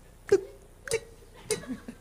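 Cowbell sound from an electronic percussion pad, struck three times about half a second apart, each hit short and sharp.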